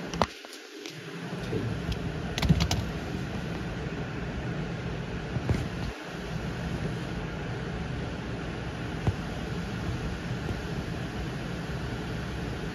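Steady background hum of machine-like room noise, with a few light clicks and taps scattered through it.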